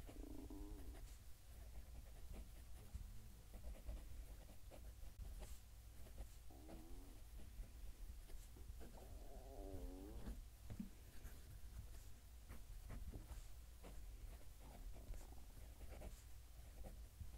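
Kaweco Sport fountain pen with a Bock 1.1 stub nib writing a sentence on paper, close to the microphone: faint scratches and small ticks from the strokes. A faint wavering tone comes three times: near the start, about seven seconds in, and about nine to ten seconds in.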